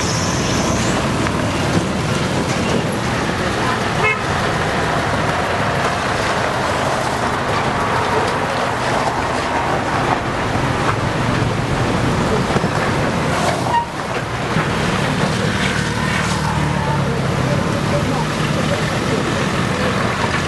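Street traffic of motorbikes and cars running past, with car horns honking.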